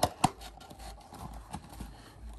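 Cardboard trading-card box being pulled open by hand: two sharp snaps a fifth of a second apart as the glued flap gives, then faint scraping and rustling of the cardboard.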